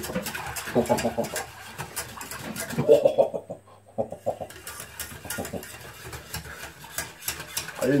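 A man laughing in short bursts, about a second in and again around three to four seconds in, the second time as a run of quick repeated laughs, over light clicking and scuffling.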